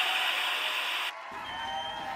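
A burst of TV static, a hiss about a second long that cuts off suddenly, followed by quiet room tone.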